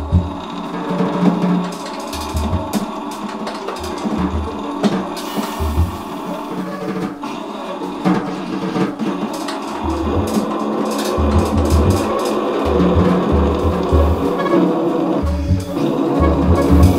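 Two saxophones and a drum kit playing live together. The horns hold lines over busy drumming with frequent snare and cymbal strokes and deep low pulses.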